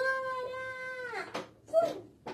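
A woman's exaggerated cartoon-style vocalisation: one long, high, held note lasting about a second that drops away at the end, followed by two short, sharp vocal sounds.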